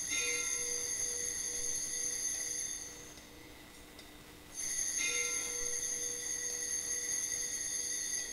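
Altar bells rung at the elevation of the chalice after the consecration: a bright, high ringing that fades about three seconds in, then a second ring starting about four and a half seconds in.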